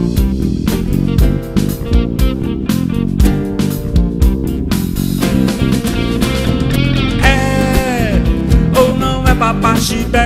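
Live band playing an instrumental passage: electric bass and drum kit with guitars. From about seven seconds in a lead line of bending, sliding notes comes in over the groove.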